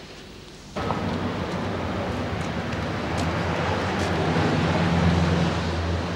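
Street traffic noise: a steady rush with a low engine hum that starts abruptly about a second in and swells a little around five seconds in, as of a vehicle passing.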